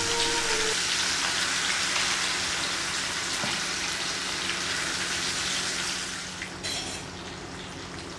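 Rohu fish steaks coated in turmeric sizzling in hot oil in a frying pan as pieces are laid in one after another, an even crackling hiss that eases off about six seconds in.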